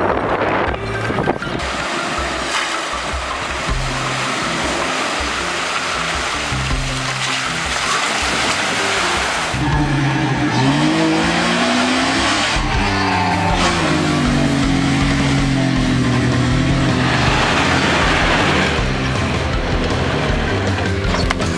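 A 2003 Jeep Wrangler TJ's engine revving as it drives through loose sand, mixed with background music; the engine note rises about halfway through.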